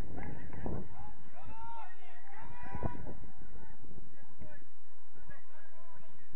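Several short calls that rise and fall in pitch, bunched about two seconds in, over a steady rumble of wind on the microphone.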